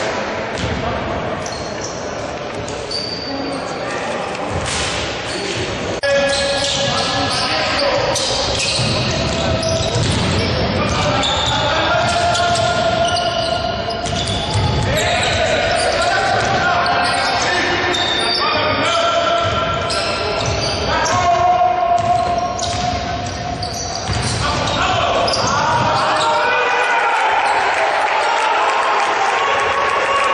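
A basketball being dribbled and bouncing on a hardwood court during live play, with sneakers squeaking briefly and often and players calling out, all echoing in a sports hall.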